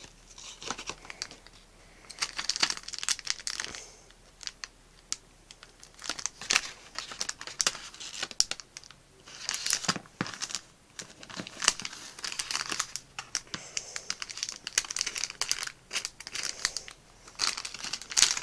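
A blind-bag packet being torn open and its wrapping crinkled by hand, in irregular bursts of crackly rustling with short pauses.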